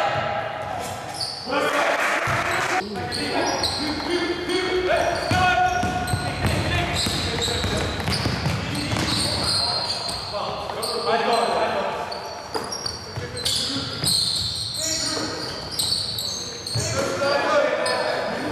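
Basketball game sounds echoing in a large sports hall: the ball bouncing on the hard court, short high sneaker squeaks, and players calling out.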